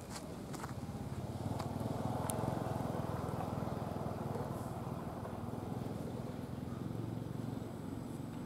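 A low motor rumble that swells about two seconds in and then slowly fades, with a few faint sharp clicks in the first two and a half seconds.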